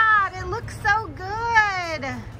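A woman's high-pitched voice calling out in two drawn-out, sing-song exclamations with no clear words, each rising and falling in pitch.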